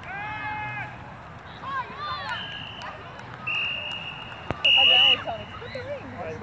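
Referee's whistle blown in three sharp, steady blasts, the last and loudest about five seconds in, signalling the play dead. Spectators shout just before the whistle.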